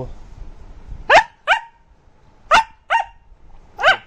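A puppy barks in short, high-pitched yaps, five in all, in quick pairs, the last one near the end. These are attention barks, demanding that its sleeping owners get up and play.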